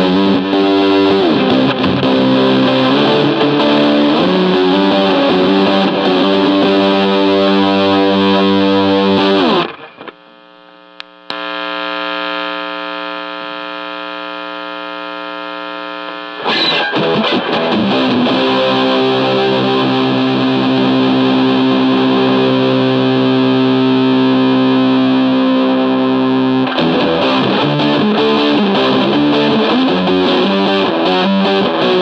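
Electric guitar through the Pine-Box Customs / Farm Pedals Bloodline dual fuzz pedal, playing heavily fuzzed riffs. The riffs cut off about ten seconds in and give way to a quieter, duller held chord. Full fuzz returns at about the middle with a long sustained chord, and riffing starts again near the end.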